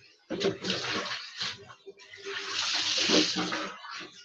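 Water poured over a bather and splashing onto a concrete floor, in two pours: a short one just after the start and a longer, louder one from about two seconds in.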